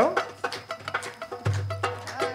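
Live band playing: a run of quick hand-drum strikes, with a low sustained bass note coming in about one and a half seconds in.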